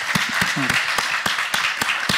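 Applause: many hands clapping fast and unevenly in a theatre hall, as thanks at the close of a talk.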